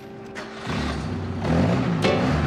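Car engine running and pulling away, a low rumble that comes in about half a second in and grows louder, with music underneath.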